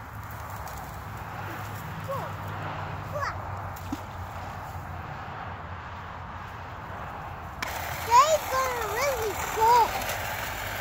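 A young boy's voice calling out in sing-song sounds that rise and fall in pitch near the end, over a steady outdoor background hiss and low hum.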